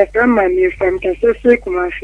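A voice speaking over a telephone line, sounding thin and cut off at the top, over a steady low hum.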